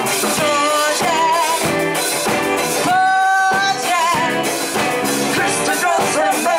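A live band playing a song, with several singers on microphones over electric guitar and keyboard. About three seconds in, one long steady note is held, then the singing carries on.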